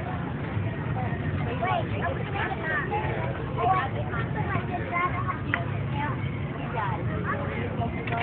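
Indistinct voices of people talking in the background, over a steady low rumble.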